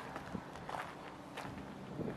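Faint footsteps on a gravel car park surface, at an even walking pace.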